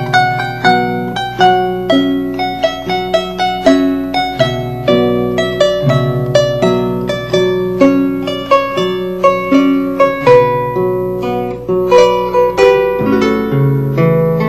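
Harp playing a jota, an old Spanish dance tune arranged for harp: a quick, continuous run of plucked notes over ringing low bass notes.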